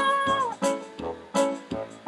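A woman's sung note slides up and falls away in the first half second, over a keyboard backing track with a steady beat; after that the accompaniment plays on alone.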